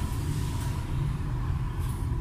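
Steady low background rumble with a faint steady hum above it.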